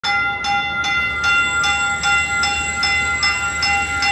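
A train's warning bell ringing, struck about two and a half times a second, each strike ringing on into the next.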